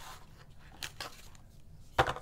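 Cardboard knife box being handled: the inner tray slides out with a faint papery rustle, a few soft taps follow, and a sharper tap comes at the very end.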